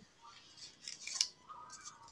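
Faint scratching and rustling from a child's hand handling the phone or tablet close to its microphone, with one sharper click about a second in.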